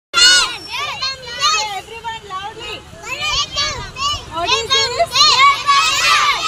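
A group of young children talking and calling out loudly together, their high voices overlapping; it starts abruptly.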